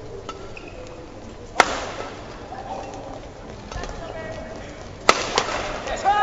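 Badminton rally: racket strings striking the shuttlecock, with two sharp, loud hits about a second and a half in and near the end, and fainter clicks and short shoe squeaks on the court floor in between.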